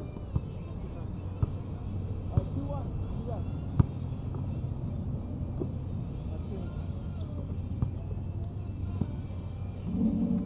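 Basketball bouncing on an outdoor court: sharp knocks about once a second for the first few seconds, the loudest nearly four seconds in, then two more near the end. Under them runs a steady low hum, with faint distant voices of players.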